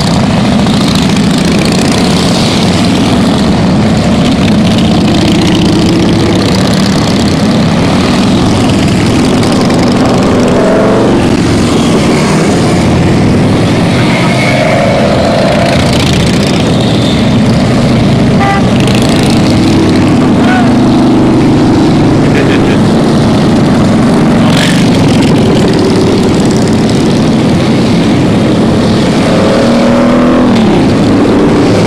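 A steady stream of cruiser and touring motorcycles passing close by, their engines running loudly and continuously, with a few rising revs as bikes go past.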